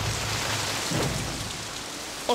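Heavy rain falling, a steady hiss, with a low rumble underneath that fades away in the second half.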